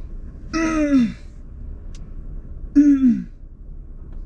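Two short wordless vocal sighs from a person, each falling in pitch, one about half a second in and one near three seconds in, over the steady low hum of a stopped car's cabin.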